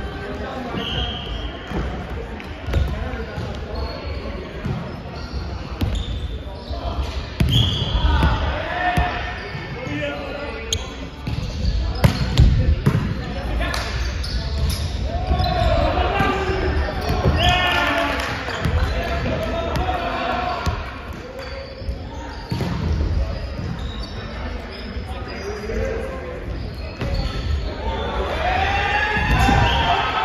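Indoor volleyball play on a wooden court in a large, echoing sports hall: the ball being struck and bouncing on the floor, with players calling and shouting.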